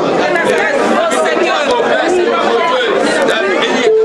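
Many voices of a congregation praying aloud at once, overlapping into a steady loud babble.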